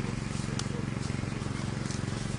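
A motor running steadily, a low droning hum with a fast even pulse, with faint voices in the background.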